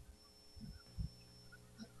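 Near silence: a faint low hum with a thin, steady high-pitched whine, and a couple of faint soft thumps around the middle.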